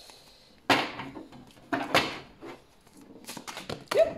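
A deck of oracle cards being shuffled by hand: short sharp slaps and riffles of the cards about a second in, at two seconds, and a quick run of them near the end, when a card jumps out of the deck.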